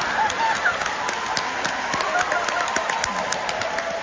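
Theatre audience laughing, with scattered handclaps through the crowd noise; the laughter slowly dies down.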